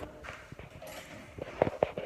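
Footsteps: a few light, separate taps in the second half.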